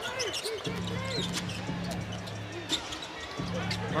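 Basketball game sound on an arena court: a basketball being dribbled, with short sharp ticks from the ball and shoes on the hardwood. Beneath it are crowd voices and arena music with a low steady drone that drops out briefly near the end.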